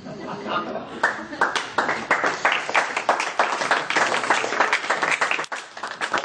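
An audience clapping: dense, rapid claps that build up about a second in and die away near the end, with voices mixed in.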